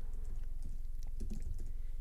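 Computer keyboard typing: a quick run of light key taps as a search term is typed.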